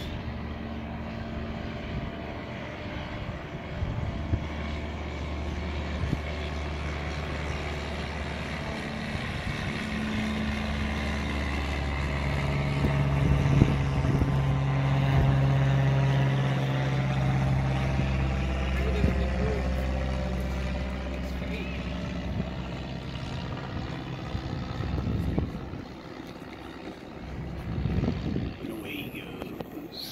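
Propeller engine of a single-engine banner-towing plane passing overhead: a steady low drone that swells to its loudest around the middle and fades toward the end.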